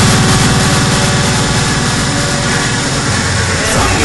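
Electronic dance music passage: a fast buzzing bass pulse under held synth tones, easing slightly, with a short sweep near the end as the full beat comes back in.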